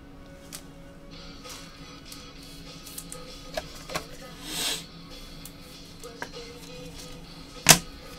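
Trading cards being handled with gloved hands: scattered soft clicks and a brief swish about halfway through, then one sharp click near the end, over faint background music.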